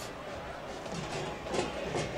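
Stadium crowd noise, a steady hum of many voices, with a faint voice coming through near the end.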